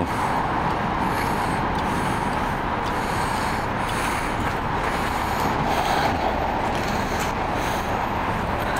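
Steady roadway traffic noise, an even rush with a low rumble under it.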